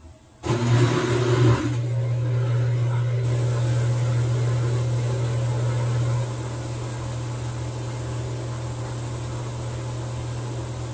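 TCL TWF75-P60 front-load washing machine starting a motor or pump about half a second in, with a brief rush of noise, then settling into a steady low hum that steps down slightly in level after about six seconds.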